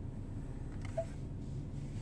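Low steady hum inside a parked car's cabin, with a faint short blip about a second in.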